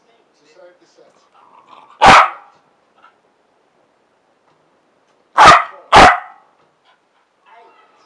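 A Parson Russell Terrier gives loud, short play barks: one about two seconds in, then two more in quick succession, half a second apart, a few seconds later.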